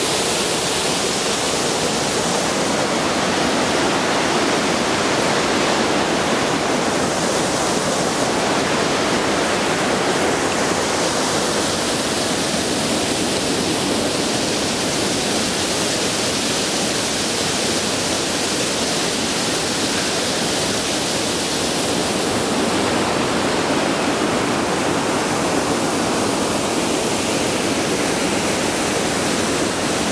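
Waterfall running through a shell of ice and snow: a loud, steady rush of falling water.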